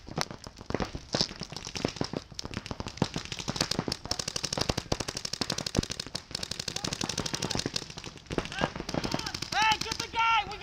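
Paintball markers firing in rapid strings of sharp pops, several shots a second, with strings from more than one marker overlapping. The firing is thickest about four to five seconds in.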